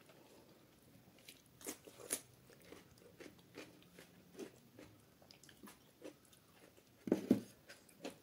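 Close-miked eating sounds from a person chewing a mouthful of rice and dal: soft, wet mouth clicks and smacks, two sharper ones about two seconds in. A louder wet squelch comes about seven seconds in.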